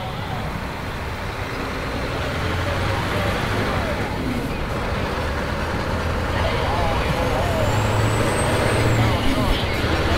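Semi truck heard from inside the cab at highway speed: steady diesel engine drone and road noise, slowly getting louder.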